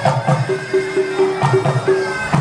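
A Thai wong bua loy funeral ensemble playing: the nasal, reedy melody of a pi chawa shawm in held, broken notes over quick strokes of the klong malayu drums, several to the second.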